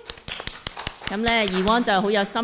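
Brief, scattered hand claps from a few people, followed about a second in by a voice.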